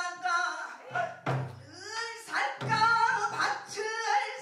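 A female pansori singer singing in long, sliding phrases with a wide vibrato, accompanied by the gosu's buk barrel drum, with a sharp stroke about a second in.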